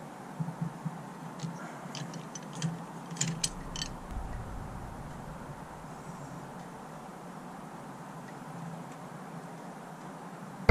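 A cluster of sharp metal clicks and clinks as a socket wrench unthreads the gutted idle air assist control valve from an Acura RSX's intake manifold and the valve is pulled free. A low rumble comes in about four seconds in.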